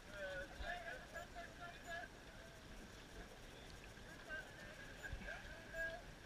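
Faint distant voices calling across open water, strongest in the first two seconds, over a low rumble of wind and water.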